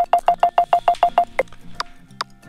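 Obstacle-detection app's alert beeps from an iPhone, a short tone repeating rapidly at about eight a second while an obstacle is only 17 cm away. About a second and a half in, the beeps slow to two or three a second as the measured distance grows to nearly two metres: the faster the beeping, the closer the obstacle.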